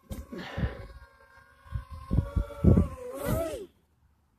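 DJI Tello mini drone's propellers whirring close by, the pitch wavering up and down, with several low thumps of handling. It stops suddenly near the end as the drone settles on a palm.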